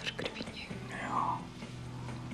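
A faint, breathy whisper from a person about a second in, after a few soft clicks at the start, over a low steady hum.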